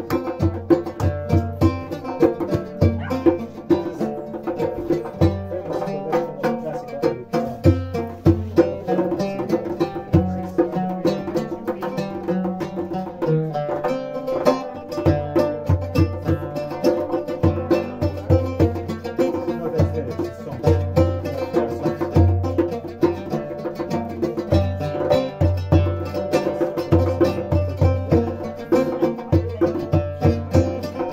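Live instrumental music: an oud playing a plucked melody over regular low strokes from a hand drum.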